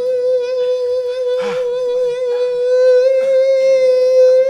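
One long, unbroken held note with a slight vibrato, the sustained closing note of a western song, with a short burst of noise about a second and a half in.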